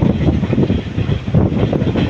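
Indian passenger train running on the track, heard from inside a coach: a loud, steady rumble of the wheels and carriages, heaviest in the low range.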